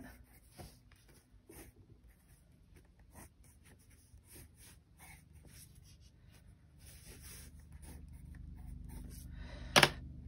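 Colored pencil scratching lightly on sketchbook paper in short, faint strokes as clouds are drawn in. A brief, louder sound comes just before the end.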